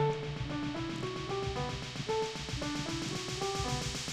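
Instrumental passage of a song: a melody of short single notes, changing every third to half second, over a low beat, with no singing.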